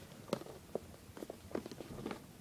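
Handling noise from the boxed iPad mini: about six light, irregular taps and clicks as the box is handled.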